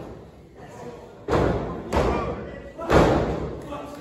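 Three loud thuds of bodies or hands hitting a wrestling ring's canvas mat, about a second in, just before two seconds and about three seconds in, with voices calling out between them.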